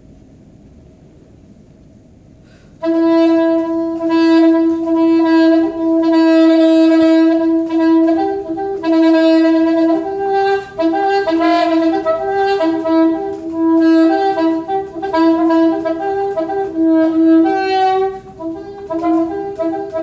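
Unaccompanied soprano saxophone. After about three seconds of room tone it comes in on a long held note, then plays a melodic line of held and shorter notes with brief breaks between phrases.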